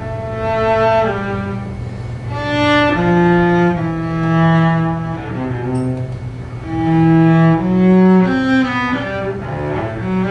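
Solo cello played with the bow: slow, sustained notes that change every second or so over a steady low note.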